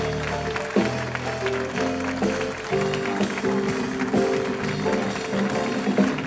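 Upbeat live band music with a steady beat, heard from within the audience of a theatre.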